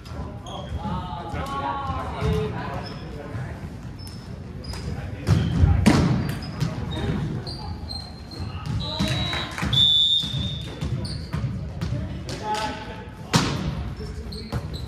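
Echoing volleyball thuds in a gym hall, from the ball being struck and bouncing on the hardwood floor, with the loudest hits about six seconds in and near the end. Short high sneaker squeaks on the floor and players' voices calling sound between the hits.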